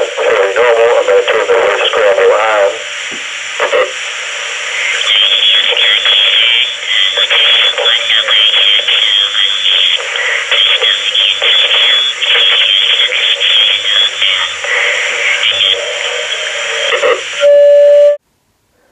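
Uniden Bearcat scanner playing the intercepted transmission of a Uniden DX4534 cordless phone with its voice scramble on: the speech comes through as garbled, unintelligible warbling. Near the end a short, loud steady tone sounds and then cuts off suddenly.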